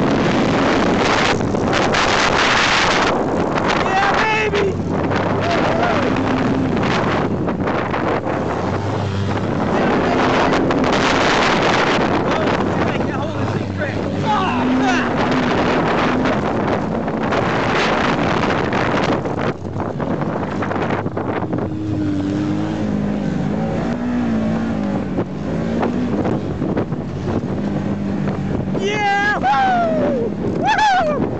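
Polaris RZR 900 side-by-side's twin-cylinder engine running hard, its pitch rising and falling with the throttle as it drives over a dirt track, with heavy wind on the microphone.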